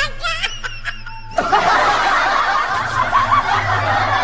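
High, wavering laughter in short rising and falling notes. About a second and a half in, it gives way suddenly to a dense, louder wash of laughter mixed with music, with a low steady hum underneath.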